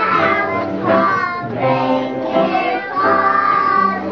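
A group of preschool children singing together, in three phrases of long held notes.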